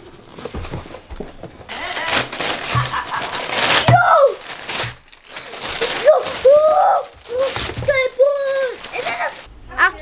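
Wrapping paper rustling and tearing as a present is unwrapped, followed from about four seconds in by children's high-pitched excited exclamations.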